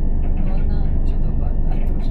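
Class 375 electric multiple-unit train running, heard inside the passenger car as a steady low rumble, with faint voices over it.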